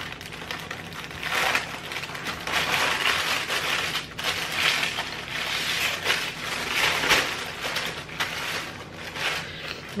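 Parchment paper crinkling and rustling as hands roll a chocolate sponge cake up inside it, coming in repeated swells every second or two.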